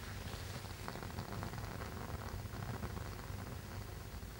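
Hand-held gas torch burning with a steady soft hiss while rubidium chloride is heated in its flame, with a few faint ticks.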